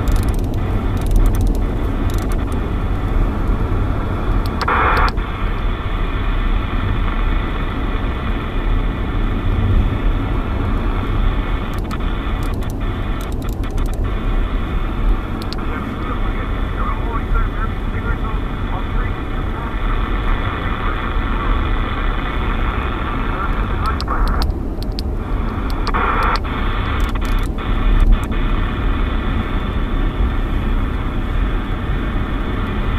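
Hiss and static from a President Lincoln II+ radio's speaker as it is tuned across 27 MHz CB channels in sideband, cutting out briefly at channel changes, with two short louder bursts about five seconds in and near the end. A steady low road rumble from the moving vehicle runs underneath.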